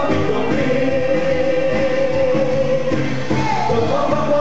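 Live pop music with singers: one voice holds a long note from about half a second in for some two and a half seconds, then glides upward near the end.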